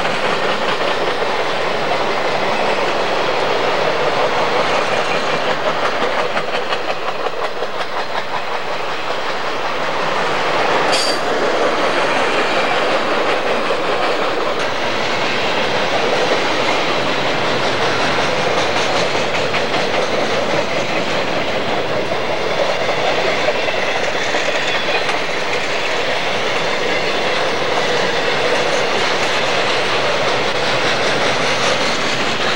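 Freight train cars, loaded flatcars then double-stack container well cars, rolling steadily past at speed, their wheels clicking rhythmically over the rail joints. A brief sharp high sound cuts through about eleven seconds in.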